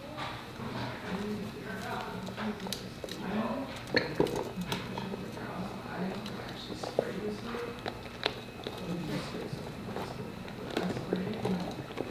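Handling noise from a clear flexible underwater camera housing cover being worked around a camera: soft rubbing with scattered clicks and knocks, the sharpest about four seconds in. A faint low voice sounds underneath.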